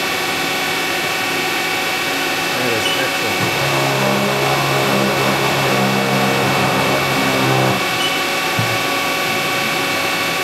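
CNC machining center's spindle running steadily with a high whine, turning an abrasive deburring brush against a machined part. About two and a half seconds in, a lower-pitched drive hum rises in, holds steady as the table feeds the part under the brush, and cuts off suddenly near the eight-second mark.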